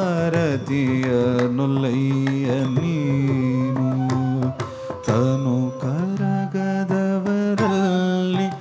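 Carnatic music: a voice singing long phrases that slide and bend in pitch, with a brief break about five seconds in.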